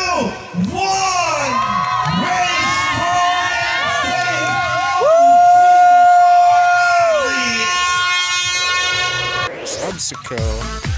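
Crowd of racers and spectators shouting and cheering at a race start, many voices overlapping. A single long held call, about two and a half seconds, is the loudest moment, starting about halfway through.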